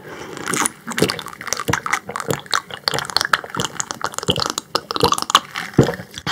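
Close-up drinking of sparkling water mixed with passion fruit purée: a quick crackle of small wet clicks, with several louder swallows spaced through it, the last and strongest just before she stops.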